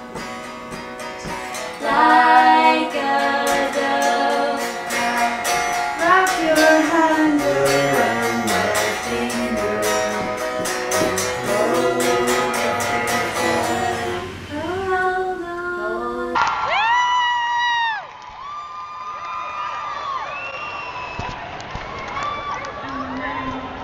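A woman singing while steadily strumming an electric guitar. About sixteen seconds in, it cuts to a quieter, duller recording of a woman's voice singing long sliding notes with no guitar.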